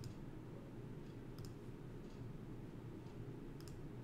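Faint clicks of a computer pointer button: three sharp clicks, each a quick double tick of press and release, the second about a second and a half in and the third near the end, over a low steady room hum.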